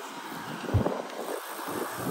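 Wind buffeting the microphone in uneven gusts, with a low rumble that swells strongest about three quarters of a second in.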